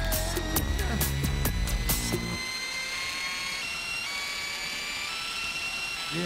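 Live electronic music with a steady beat and heavy bass that cuts off suddenly about two seconds in. Thin, steady high electronic tones hold on after it, one of them slowly rising.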